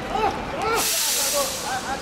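Players shouting to each other during a football match, with a sudden loud burst of hiss about a second in that fades away over most of a second.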